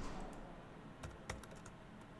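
Computer keys clicking as an equation is typed: one click at the start, then a quick cluster of clicks about a second in.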